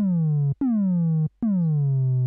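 Native Instruments Massive software synth playing a sine-square wavetable note three times; each note drops quickly in pitch, then holds a steady low tone for about half a second. This is a pitch envelope shaping a synthesized trap kick drum, with the envelope's sustain still on, so each note rings on instead of dying away.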